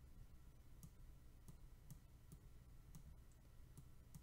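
Near silence: a low steady hum with a few faint, scattered clicks, from a stylus tapping on a pen tablet as handwritten annotations are drawn.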